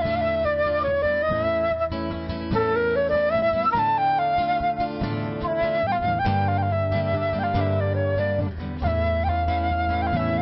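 Transverse flute playing a melody over a strummed steel-string acoustic guitar, a flute-and-guitar instrumental passage with no singing yet.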